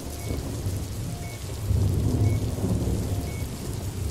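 Steady rain with a low rolling thunder rumble that swells about two seconds in. A faint short beep repeats about once a second.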